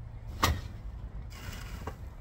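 A single sharp thump about half a second in as rubbish is thrown into a dumpster, then a lighter knock near the end, over a steady low rumble.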